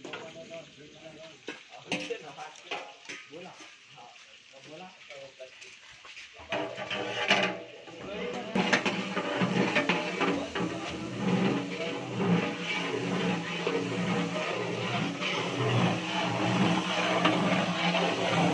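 Wood fire crackling under a large cooking pot, with scattered clicks and metal clinks. From about six seconds in, people talk in the background and it grows louder.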